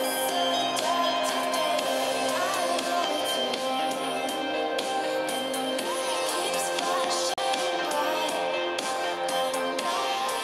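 Music with a steady beat played through the LeEco Le Pro 3 Elite smartphone's stereo speakers.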